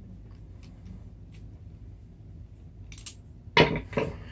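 Small metal clicks and clinks of a glow plug in a glow plug wrench being set down into a Traxxas 2.5 nitro engine head. Faint ticks come first, then a sharper click about three seconds in, and a louder clack just after.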